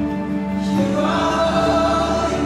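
Live worship music: a band playing held chords under a group of voices singing together, with a new sung line coming in about a second in.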